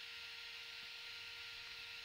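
Faint room tone: a steady hiss with a faint steady hum.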